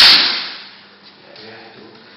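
A single sharp, loud whack of a sword blow at the start, with a noisy tail that fades out over about half a second.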